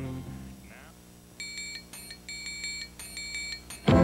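A held low music chord fades out. From about a second and a half in, short high electronic beeps sound in quick groups, like a digital alarm clock. Louder music starts suddenly just before the end.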